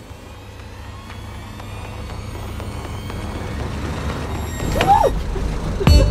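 A low vehicle rumble that grows gradually louder, with a brief voice exclamation rising and falling in pitch just before the end.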